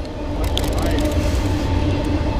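Steady low rumble with a humming drone of a container freight train crossing a railway bridge. A short run of fast clicks comes about half a second in.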